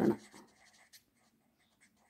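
Marker pen on paper, faint scratching strokes as a word is written over about the first second, then near silence.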